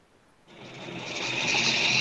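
Steady hissing noise on a video-call audio line. It fades in about half a second in, after a moment of dead silence, and grows louder over the next second and a half.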